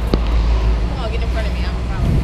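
City street noise: a steady low rumble of traffic, with faint voices around the middle and a single sharp click just after the start.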